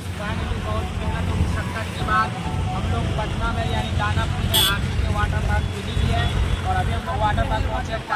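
A man talking over a steady low rumble, with one short hiss about halfway through.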